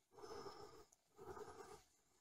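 Faint breathing, two slow breaths in a row, each a soft puff of under a second with a short pause between.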